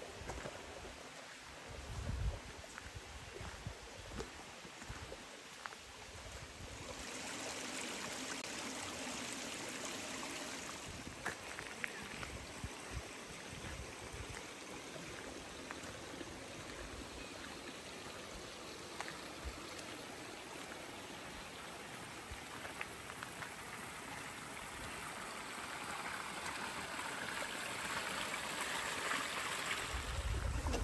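Mountain valley stream running over rocks: a steady rush of water that grows louder about seven seconds in and again near the end. A few low thumps in the first seconds.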